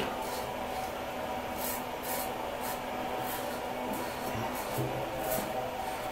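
Merkur Futur safety razor with a Zorrik double-edge blade scraping through lathered stubble in a series of short, separate strokes, roughly two a second, each a brief high rasp.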